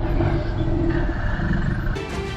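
A recorded dinosaur roar, low and rumbling, taking the place of the background music.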